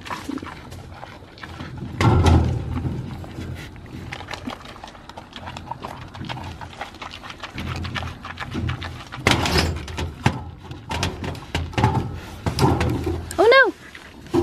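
Wild boar chewing bread at a wire fence, with wet smacking clicks and a louder low sound about two seconds in. A short rising-and-falling vocal call comes near the end.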